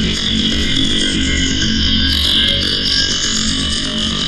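Dense industrial noise music: a steady, loud wall of distorted feedback-like sound with a piercing high band and a low drone beneath, run through an analogue amplifier simulation plugin.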